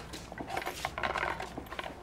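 Small objects being handled in a paper bag: a run of light clicks and metallic clinks.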